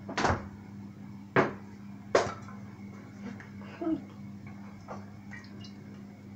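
Popcorn kernels starting to pop in hot oil under a glass pot lid: sparse single pops, three sharp ones in the first couple of seconds, then a couple of fainter ones, the first stage of popping.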